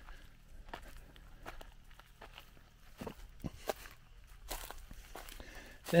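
Footsteps at a walking pace over dry soil and leaf litter, a faint crunch with each step.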